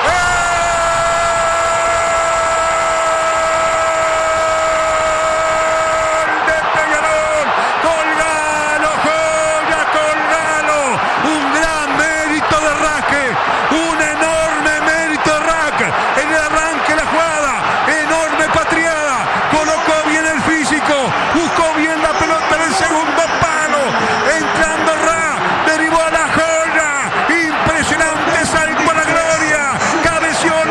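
A Spanish-language radio football commentator's goal cry: one long held shout of "gol" for about six seconds, then excited shouting that swings rapidly up and down in pitch.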